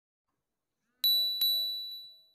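Smartphone message notification chime: two quick, bright dings of the same pitch, the second about a third of a second after the first, both ringing and then fading away.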